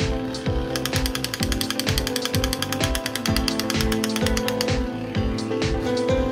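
A crawling toy soldier's machine-gun sound effect: a fast, even rattle of about fourteen clicks a second, starting just under a second in and stopping after about four seconds. It plays over background music with a steady beat.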